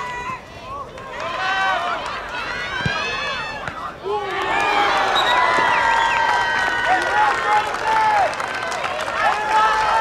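Players shouting on the field, with a single thump about three seconds in. From about four seconds in, many voices break into sustained high-pitched cheering and screaming as a shot goes in on goal.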